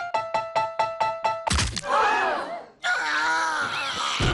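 Giant floor piano played with the feet: a quick run of repeated piano notes, about five a second. About a second and a half in, a heavy thunk cuts it off, followed by a man's drawn-out cry and then more vocal sounds.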